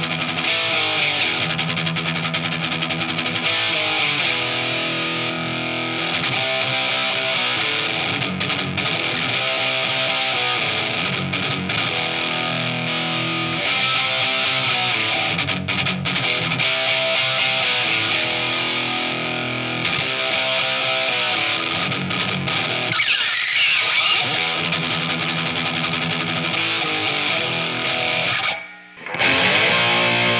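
Distorted electric guitar riff on an Epiphone Les Paul, played through a Ceriatone Gargoyle Marshall-style tube amp head into a Marshall 4x12 cabinet, close-miked with an SM57, with the RAT distortion pedal switched off. The tone is very treble heavy, raw, nasally and nasty, with rhythmic palm-muted chugs. The playing breaks off briefly near the end.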